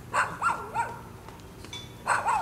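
A dog whining: a couple of short whines that rise and fall in pitch, in the first second.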